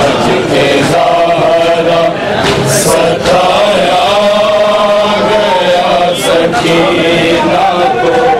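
Men's voices chanting a noha, a Shia mourning lament, in long drawn-out melodic lines.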